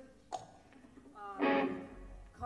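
An electric guitar struck once with a full chord about halfway through, after a short click.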